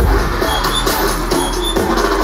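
Electronic bass music played loud over a festival sound system, with heavy bass and a driving beat, recorded from within the crowd.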